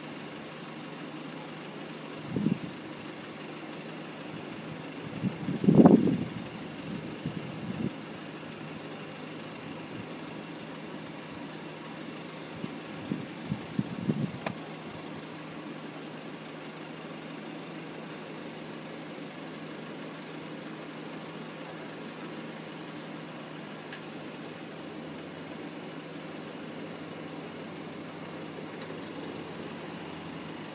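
Steady low hum of cars and a pickup truck idling in a queue at a railroad crossing. A few short low thumps break in about two and a half seconds in, around six seconds (the loudest), and again around thirteen to fourteen seconds.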